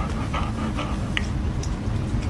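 A golden retriever making short, repeated sounds about every half second, over a steady low rumble.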